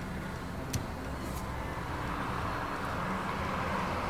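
Car and traffic noise picked up by a small recorder held out of a car window: a low engine hum under a steady road-noise hiss that builds gradually toward the end, with one brief click near the start.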